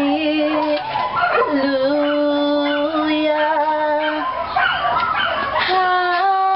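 A woman singing a hymn unaccompanied in long held notes, with a dog howling and whimpering along in reaction to her voice.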